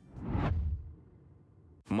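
A single whoosh transition sound effect with a low rumble under it, swelling to a peak about half a second in and fading away within about a second.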